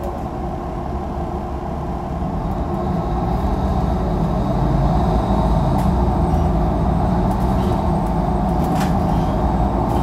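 Cabin sound of a 2016 Nova Bus LFS transit bus under way: a steady engine and drivetrain drone with road noise. It grows louder about three to five seconds in, with a few light clicks later on.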